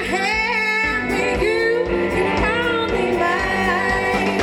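Live blues-rock band: a woman singing over electric guitar and a drum kit, with a steady beat.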